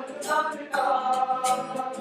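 A group of voices singing a song together, with a long held note from just under a second in to the end.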